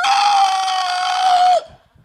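A man's high falsetto squeal into a handheld microphone, one steady held note for about a second and a half that dips as it ends, mimicking a frightened little girl.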